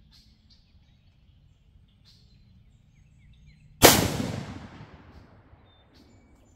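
A single shot from a Savage Axis II heavy-barrel bolt-action rifle in 6mm ARC about four seconds in: a sharp crack with a long echoing decay lasting over a second. Faint bird chirps before it.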